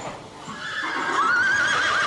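Horse whinnying: one long neigh with a rapidly wavering pitch that starts about a second in, over a steady background hiss.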